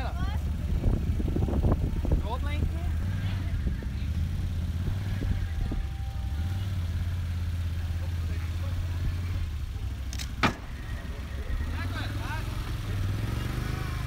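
Can-Am Outlander quad's engine running steadily at low speed, its pitch rising near the end. A single sharp knock sounds about ten seconds in.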